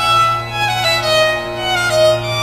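Background music led by a violin playing a slow melody, its notes stepping and sliding from one to the next over held lower notes.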